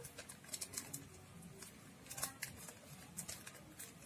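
Faint crinkling of a foil letter balloon handled in the hands while a drinking straw is worked into its valve neck, in scattered short crackles.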